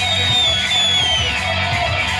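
Heavy metal electric guitar solo played live over the band: a high held note slides down in pitch over about a second, with drums pounding steadily underneath.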